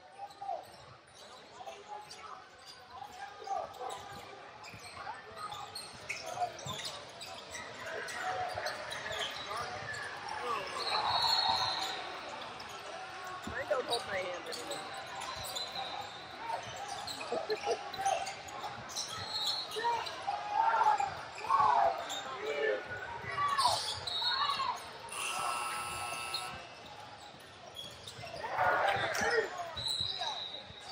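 Basketballs bouncing on hardwood courts amid scattered voices, echoing in a large multi-court gym.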